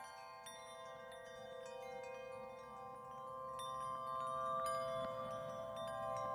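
Background music: soft, sustained chime-like bell tones with no beat, slowly growing louder.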